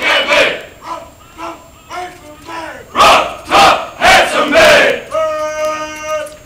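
A marching platoon of sailors shouting a cadence together: quieter short calls in the first seconds, then four loud shouted syllables about three to five seconds in, and a long drawn-out note near the end.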